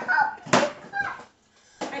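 A knife knocking sharply on a cutting board, once about half a second in and again near the end, amid short bits of speech.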